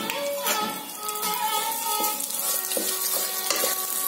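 Dry split moong dal tipped into a hot clay pot, the grains hissing and rattling on the clay, then stirred with a steel ladle scraping through the roasting lentils.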